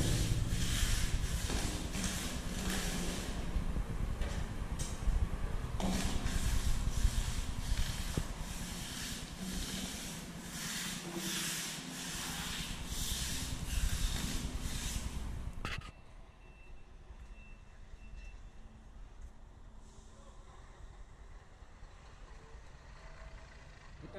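Wide brush scrubbing cement-based waterproofing coating onto a rough masonry tank wall in quick, repeated strokes. The brushing breaks off abruptly about two-thirds of the way through, leaving a much quieter stretch.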